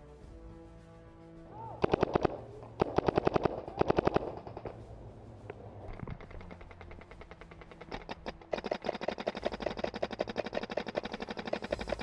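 Paintball markers firing in rapid bursts: three short strings of shots about two seconds in, then a long, fast stream of shots from about eight and a half seconds on.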